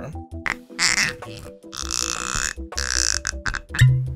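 Background music with a steady beat, over which a person sips whisky and lets out two breathy exhales about halfway through. A loud thump comes near the end.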